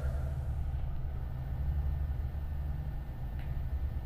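A steady low rumble with a faint background hiss.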